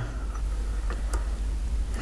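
A few faint ticks from fingers turning the gate-voltage knob on a small home-made field-effect transistor tester, over a low steady hum.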